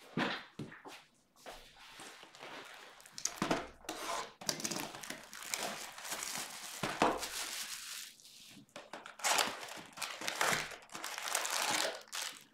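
Cardboard trading-card boxes and their plastic wrapping being handled on a table: irregular rustling and crinkling, with a few sharp knocks as the boxes are moved.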